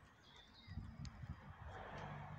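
Faint outdoor background: low rumbling and rustling that picks up about a third of the way in, with a few faint, short high chirps.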